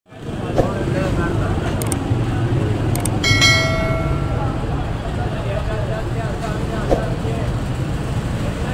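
Busy street-market ambience: a murmur of crowd voices over a steady rumble of traffic. About three seconds in, a single bright ringing tone sounds and fades over about a second.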